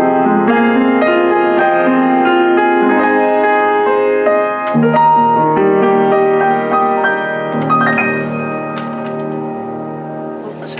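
Rogers upright piano from around 1975 being played: a flowing passage of chords under a melody, ending on a held chord that rings on and slowly fades over the last couple of seconds.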